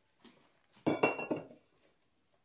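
Stainless steel milk jug clinking as it is handled and set down: a faint knock, then a quick cluster of metallic knocks with a short ring about a second in.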